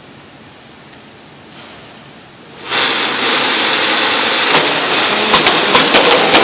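An FRC robot's frisbee shooter. Its motor-driven flywheel starts up suddenly about two and a half seconds in and runs steadily, and discs are fired with sharp clacks near the end.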